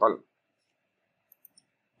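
A word of speech ends, then two or three faint, quick computer mouse clicks come about a second and a half in, over near silence.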